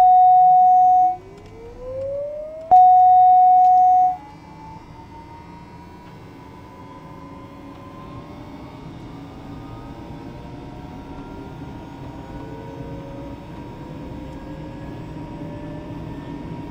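Pratt & Whitney PT6E turboprop of a Daher TBM 960 starting up, heard in the cockpit: a whine that rises steadily in pitch as the engine spools up, growing slowly louder. Two long steady tones, each over a second, sound at the start and about three seconds in.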